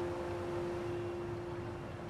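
Soft background music: a held piano chord slowly dying away, with no new notes struck.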